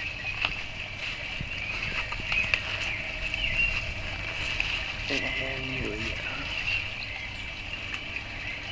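Outdoor garden ambience: a steady, high-pitched chirring of insects throughout, over a low steady hum, with a few light handling clicks and a brief faint voice in the middle.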